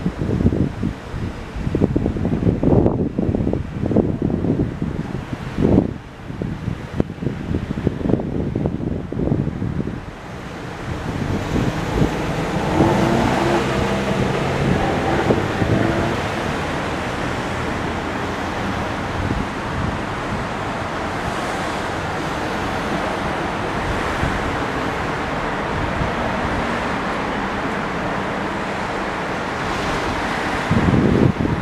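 Wind gusting on the camera's microphone for about the first ten seconds, then a vehicle passes with an engine hum, followed by a steady roar of city street traffic.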